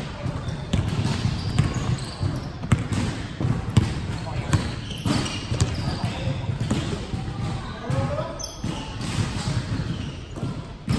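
Basketball bouncing on a hardwood gym floor during play: irregular knocks from dribbling, heard over players' voices.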